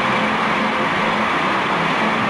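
Audience applause, a dense steady clapping that holds at an even level throughout.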